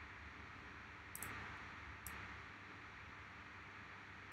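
Faint steady hiss of room tone, with a computer mouse click about a second in and a softer click near two seconds.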